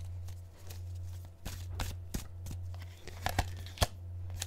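Tarot cards being handled: a scatter of short, sharp clicks and flicks of card against card, about six of them in the second half, over a steady low hum.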